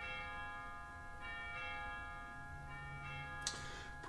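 Bells ringing softly, struck again about every second and a half, each strike's tones lingering. A brief sharp noise comes near the end.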